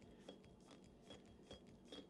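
Faint, scattered small clicks and rubbing of a PCP air rifle's air cylinder being turned on its threads as it is unscrewed, before its air vents.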